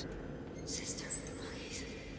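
Faint horror-trailer whispering: a couple of short breathy hisses about a second apart over a low hum.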